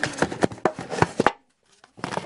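A small clear plastic bag holding two screwdriver bits being handled on a tabletop: a quick run of sharp crinkles and taps, which cuts out abruptly about two-thirds of the way in.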